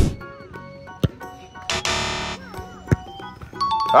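Background music with edited comedy sound effects: short gliding tones, a harsh buzzing tone of about half a second near the middle, and a few sharp knocks.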